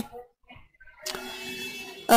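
A pause with no clear sound event: almost silent for about a second, then a faint steady hiss with a low hum.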